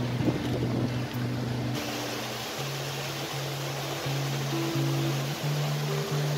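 Instrumental backing of a song between sung lines: held low notes that change every second or so, over a steady hiss.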